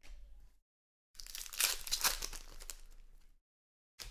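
Trading cards being handled and sorted by hand, rustling and crinkling: a short rustle, a pause, then a louder crinkling stretch of about two seconds.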